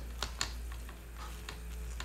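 A few small, sharp plastic clicks and taps as hands handle wires and parts on a plastic RC car chassis, two close together early and a couple more about a second and a half in, over a steady low hum.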